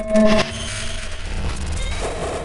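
Outro logo sting sound effect: a short pitched tone in the first half-second, then a low, steady rumbling noise.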